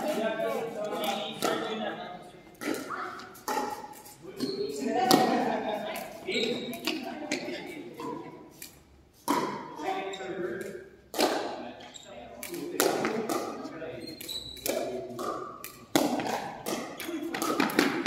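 Pickleball being played in a gym: irregular sharp pops of paddles striking the hollow plastic ball and of the ball bouncing on the hard floor, echoing in the large hall, over background chatter of players.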